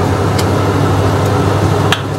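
A steady low hum and rush of kitchen background noise, with two sharp knocks of a wooden spoon against a stainless steel pot, one about half a second in and one near the end.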